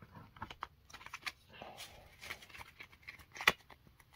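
Trading cards being handled and gathered into a stack: soft rustling and light scattered clicks, with one sharper tap about three and a half seconds in.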